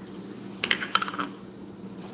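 A quick cluster of sharp, light clicks and taps, a little after half a second in and lasting about half a second, as small plastic toy containers are handled against a wooden tabletop.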